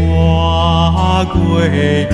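Buddhist devotional chant sung to music: a voice holds slow notes over a sustained instrumental accompaniment, moving to a new note a little past halfway.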